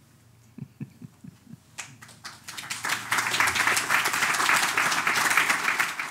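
Audience applause: a few claps about two seconds in, swelling quickly to full, steady applause.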